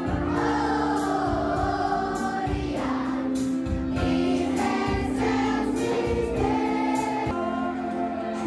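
A group of children singing a Christian song together in unison, over steady held keyboard chords and a regular beat.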